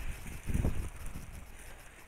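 Low wind rumble on the microphone, with a brief muffled rustle about half a second in.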